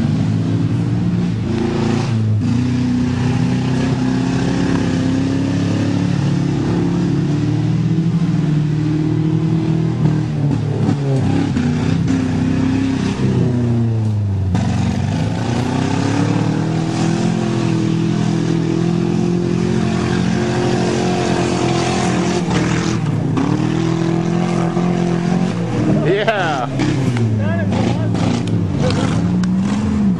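Car engines revving up and easing off again and again as two derby cars manoeuvre and ram each other, with a few sharp knocks along the way.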